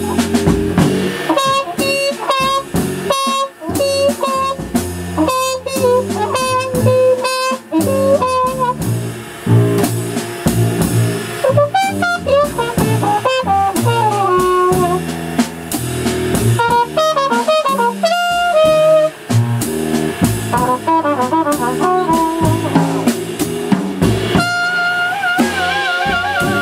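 Live jazz: a trumpet plays a fast improvised line over upright double bass and drum kit. Near the end it settles on a long held note with vibrato.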